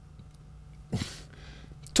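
A pause between words with a faint steady low hum. About a second in, a person makes one short breath or throat sound.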